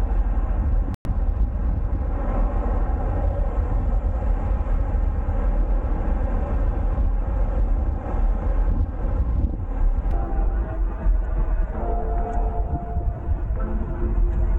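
Wind buffeting the microphone of a handlebar-mounted 360 camera as a road bike rides along at speed, a steady rushing noise with road noise underneath. The sound cuts out for an instant about a second in, and faint steady tones join it in the last few seconds.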